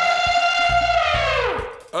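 A cartoon elephant trumpeting: one long, loud held call that slides down in pitch near the end, over background music with plucked bass notes.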